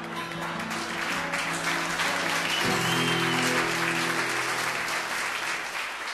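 Audience applause swelling over the final acoustic guitar chords at the end of a song. The guitar moves to a last held chord partway through, and the applause carries on as it dies away.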